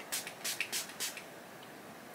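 Fine-mist pump spray bottle of makeup-remover spray being spritzed at the face: a quick run of about five short hissing sprays in the first second or so.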